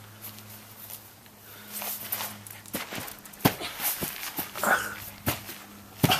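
A dog barking and whining a few times, mixed with scattered short thuds.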